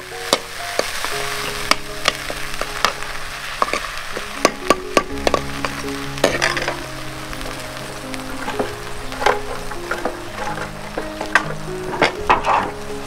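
A steel ladle stirring curry in a kadai, clicking and scraping against the pan many times over the steady sizzle of the frying food. Soft background music with held notes plays underneath.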